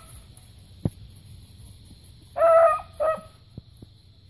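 A young beagle giving mouth on a rabbit scent trail: two short, high, steady-pitched bays about two and a half and three seconds in, the first the longer. A single small click comes just before them, about a second in.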